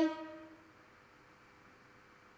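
The tail of a voice holding the Mandarin syllable 'bāi' on a steady, level pitch (first tone), fading out within the first half-second. After that, near silence with a faint steady hum.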